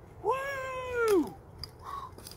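A man's single high, drawn-out exclamation, rising and then falling in pitch and lasting about a second, as he almost slides out on his crutches.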